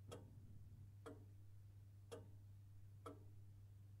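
Near silence with faint, evenly spaced ticks about once a second over a low steady hum.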